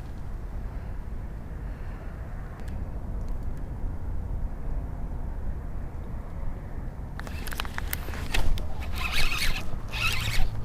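A fishing reel being cranked on a retrieve: a quick, dense run of clicks and rasps from about seven seconds in, over a low, steady rumble.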